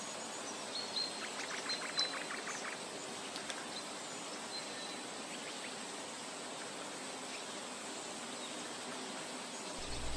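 Faint outdoor nature ambience: a steady soft hiss with a few faint chirps and a quick run of ticks in the first few seconds.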